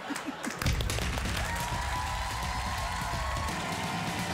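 Studio audience applauding, then about half a second in a rock music bumper with a heavy bass line comes in over it.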